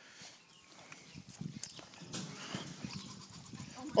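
A bear moving about and playing behind a fence: faint, irregular scuffling and knocking that grows louder about two seconds in.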